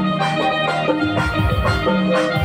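Live band music from electronic keyboards over a steady drum beat, an instrumental passage with no singing.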